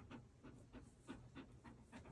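Golden retriever panting softly, quick short breaths about four to five a second.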